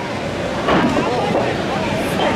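A thrown axe hitting a wooden target wall: a dull, noisy knock a little under a second in, over steady crowd babble in a large hall.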